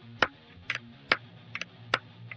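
Computer keyboard keys clicking: about seven sharp presses, some in quick pairs, as the Control-Alt-N shortcut is pressed again and again without result. A low steady hum runs underneath.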